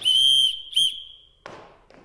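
A whistle blown as a call signal: one long steady high note, a brief break and a short blip, then the note again fading out about a second and a half in. It is the signal that calls one of the children forward.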